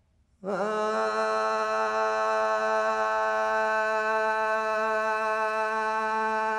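Unaccompanied male voice singing a Taomin hua'er (Gansu flower song): about half a second in he enters with a brief scoop up to one long held note, then sustains it steady at a single pitch.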